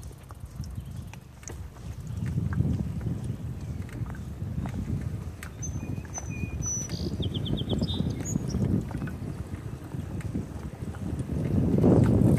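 Wind buffeting the microphone while riding a bicycle along a road: a low rumble that swells and fades. A few short high chirps about seven seconds in.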